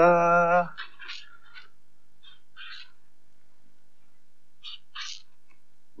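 Felt-tip marker writing on paper: a few faint, short scratching strokes. Near the start a brief pitched, wavering note is louder than the strokes.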